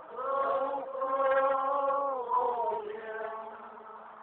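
Slow chanted singing by voices: a long held note that slides down in pitch a little after two seconds, then fades near the end.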